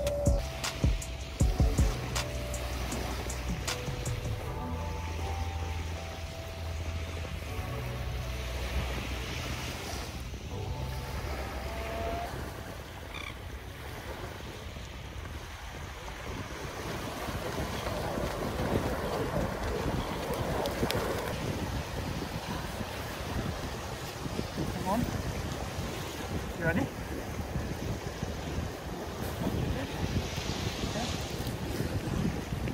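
Background music with a held bass line for about the first twelve seconds, then wind on the microphone and surf washing on the beach, growing louder in the second half.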